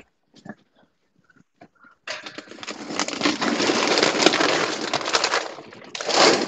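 Close rustling and scraping noise, crackly throughout, starting about two seconds in and fading out after about three and a half seconds, followed by a shorter burst at the end.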